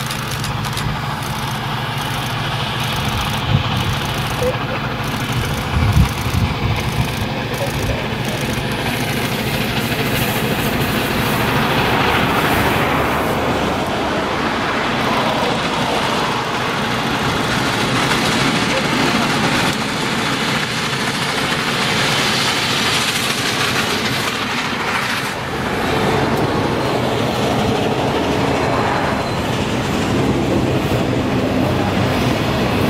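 Union Pacific Big Boy 4014, a 4-8-8-4 articulated steam locomotive, approaching and passing with its train, the rumble growing louder about a third of the way through. Freight cars then roll by on the rails.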